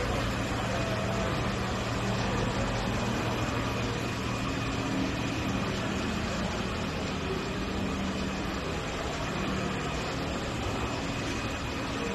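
Steady background noise of an indoor exhibition hall, with a low, even hum under it.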